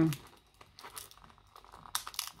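Plastic packaging of an SD card being picked at and pried open by hand: faint, scattered crinkles and small ticks, with a sharper click near the end.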